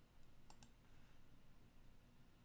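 Two quick clicks of a computer mouse button, close together about half a second in, over near-silent room tone.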